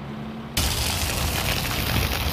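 Dry grass fire burning: a dense crackling hiss with a low wind rumble on a phone's microphone, cutting in suddenly about half a second in.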